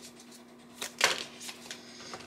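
Tarot cards being handled: a few light card clicks and one sharper card snap about a second in, as a card is drawn from the deck and laid down.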